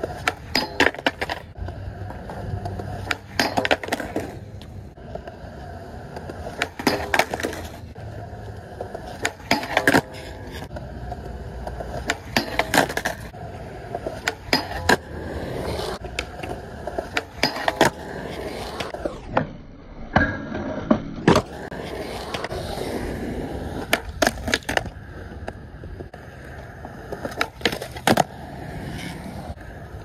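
Skateboard at a concrete skatepark: urethane wheels rolling, with a string of sharp cracks and clacks from the tail popping, the trucks grinding and sliding on a metal flat bar, and the board landing on concrete, over many attempts.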